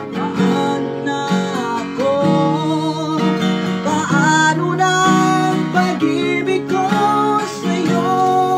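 Acoustic guitar strummed in a slow ballad rhythm while a man sings along in Tagalog, his voice held on long notes with vibrato.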